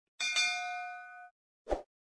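Subscribe-animation sound effects: a bright notification ding, struck twice in quick succession, its ringing tones fading over about a second. A short soft pop follows near the end.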